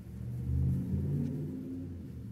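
A low rumble with a few steady low tones, swelling about half a second in and easing off towards the end.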